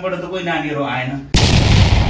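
A man speaking is cut off by a sudden, loud noise burst that is heavy in the low end. The burst lasts about a second and a half and stops abruptly. It works as an edited boom or impact transition effect between the black-and-white teaser and the main footage.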